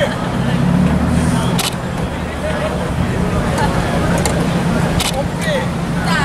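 A vehicle engine idling as a steady low hum, with indistinct voices around it and a few sharp clicks, one about two seconds in and two close together near the end.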